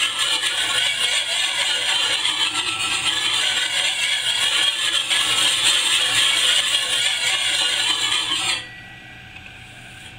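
Coarse side of a puck sharpening stone rubbed quickly back and forth along the steel edge of a garden hoe, a steady gritty scraping. It stops suddenly near the end.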